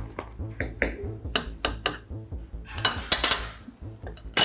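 Cutlery clinking against cups and dishes: a run of light, sharp clinks, busiest with a brief ringing flurry about three seconds in.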